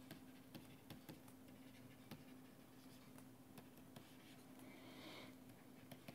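Faint taps and scratches of a stylus writing on a pen tablet, over a steady low hum.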